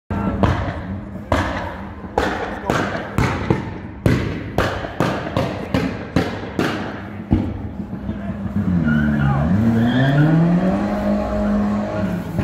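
A car's exhaust popping and banging over an idling engine, sharp cracks about two or three a second for the first seven seconds or so, typical of a pop-and-bang tune. Then the engine revs, dipping and climbing in pitch before holding a steady higher note.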